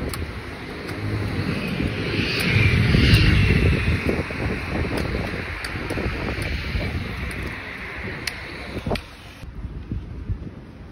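Street traffic rumble with wind buffeting the microphone, swelling loudest about two to three seconds in as a vehicle goes by. The sound drops sharply near the end.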